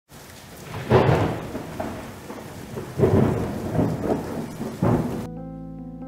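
Heavy rain with three loud rolls of thunder, about one, three and five seconds in. The storm cuts off suddenly just after five seconds into a held guitar chord.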